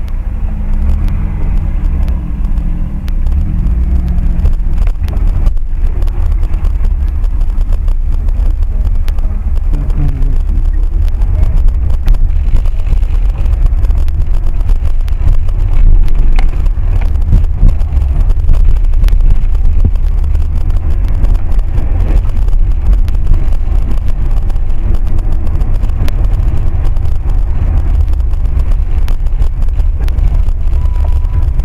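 A car being driven, heard from inside its cabin: a steady, loud low rumble of engine and road noise.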